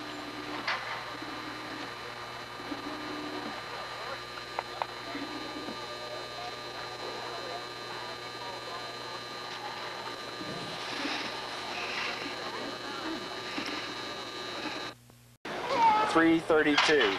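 Faint, indistinct voices of people around a rodeo arena over a steady hum, with a few soft knocks. The sound drops out briefly near the end.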